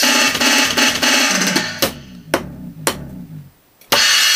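Roland electronic drum kit played fast. A busy stretch of drums and cymbals gives way to a run of tom notes stepping down in pitch, broken by a few sharp single hits. The cymbals drop out and it goes briefly quiet before a loud hit right at the end.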